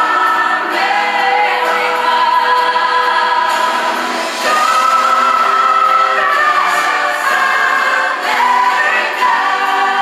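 A choir singing with musical accompaniment, in long held notes.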